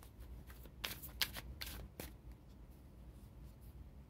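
A tarot deck shuffled by hand: a run of quick, sharp card snaps, densest around one to two seconds in, then fading to a few faint ticks.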